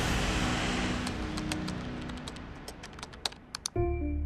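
Computer keyboard typing clicks, scattered at first and coming faster and louder toward the end, over a low sustained music drone. Just before the end, a music phrase of clear, evenly struck notes comes in.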